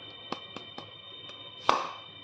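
A salt shaker being shaken in a few light ticks, then a sharp clack near the end as it is set down on the stone countertop.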